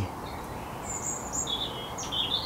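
A small bird chirping: a few short, high chirps starting about a second in, over a steady low background hum.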